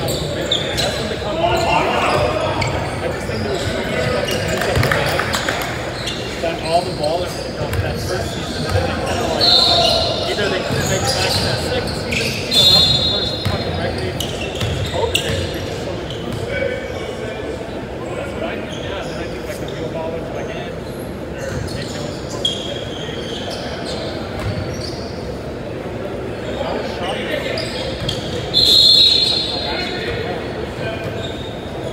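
Basketball game in an echoing gym: a ball bouncing on the hardwood floor and players' voices calling out. A few short, shrill blasts of a referee's whistle stand out, the loudest about twelve seconds in and near the end.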